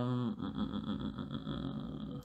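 Rustling and handling noise close to the microphone while a man searches for a text, after the tail end of his last word.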